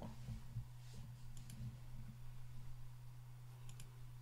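Quiet room tone with a steady low hum and a few faint clicks, a pair about a second and a half in and more near the end.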